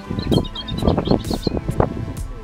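A small bird twitters in a quick run of short high notes in the first half. Under it runs a loud, irregular low rumble with many short thumps.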